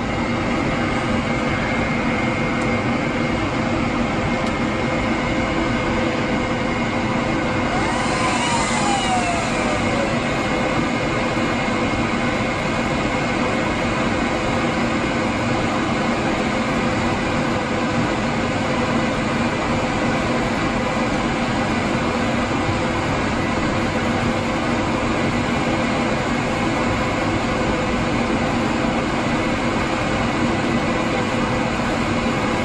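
Cooling fans of several Apple Xserve cluster nodes running in a rack as another node boots: a loud, steady whir with a few steady hums in it. About eight seconds in, a whine rises and then falls away over a couple of seconds.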